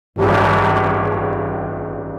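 Logo sting sound effect: a single gong-like struck note that starts abruptly after a split second of silence and rings on with many steady tones, slowly fading.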